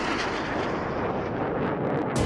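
Twin-engine fighter jet flying overhead with its afterburners lit: a steady, loud jet-engine rush whose highest hiss dulls toward the end as the jet moves off.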